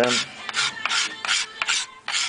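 A cabinet scraper drawn in quick short strokes along a wooden Telecaster neck, about four scrapes a second. The blade is deliberately blunt, and the scraping smooths out the fine scratch marks left by the file before sanding.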